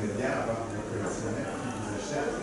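Faint, distant speech from an audience member talking away from the microphone, over a steady low hum.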